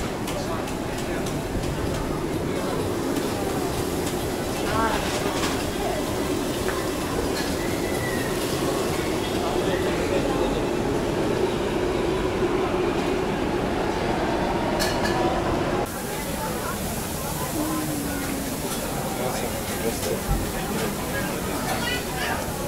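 Busy outdoor market ambience: indistinct crowd chatter over a steady low mechanical hum, with occasional clinks. The sound changes abruptly about sixteen seconds in, where the hum drops away.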